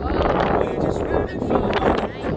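Strong wind buffeting the microphone, a loud, uneven rush.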